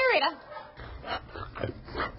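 A dog gives one short, high whimper that rises and falls at the very start, followed by a few light taps of steps on a tiled floor.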